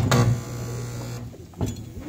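A chair knocked and dragged across a hard floor as someone stands up, scraping with a buzzing tone for about a second, followed by a second knock.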